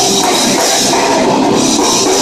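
A live rock band playing loud and steady: electric guitars over a drum kit.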